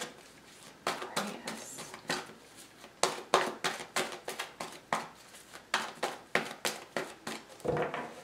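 A deck of tarot cards being shuffled by hand, the cards snapping and slapping against each other in quick, irregular clicks, a few each second.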